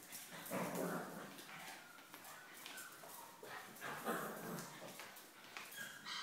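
A puppy and an adult dog play-fighting, with a string of short, soft whimpers and yips.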